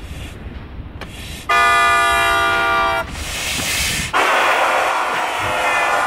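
A loud, held blast of several steady tones sounding together, lasting about a second and a half, followed by a loud rushing noise.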